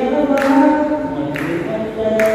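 A man singing solo and unaccompanied into a microphone, holding long sustained notes that glide from one pitch to the next.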